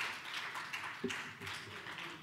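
Audience applauding, a dense patter of many hands clapping that slowly dies down.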